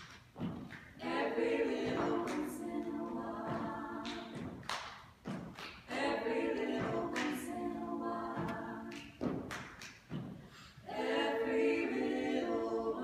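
Four women's voices singing a cappella in close harmony, in phrases of a few seconds, with sharp hand claps keeping the rhythm, heard most plainly in the short breaks between phrases.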